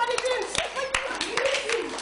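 Children's high-pitched voices with sharp, scattered hand claps.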